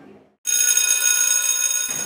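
A steady electric ringing tone, many pitches sounding at once, starts abruptly about half a second in after a moment of silence and cuts off just before the end.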